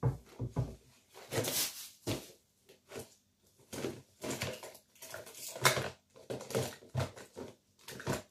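Hands rummaging through a clear plastic box of small tools, tape and wires: irregular clattering, rattling and knocking of the contents and the box being shifted.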